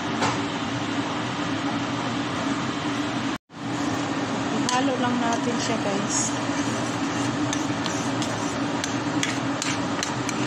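A spoon stirring thick tomato sauce in a stainless-steel pot, with faint scrapes and clinks against the pot over a steady low hum. The sound breaks off for a moment about a third of the way in.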